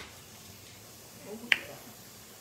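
A single short, sharp click about one and a half seconds in, over quiet room tone.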